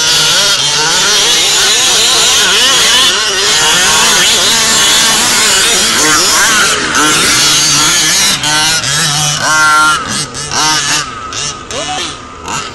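Several 1/5-scale petrol RC Baja buggies' two-stroke engines revving and easing off, their pitches overlapping and rising and falling as they race over sand. A few sharp rising revs come near the end.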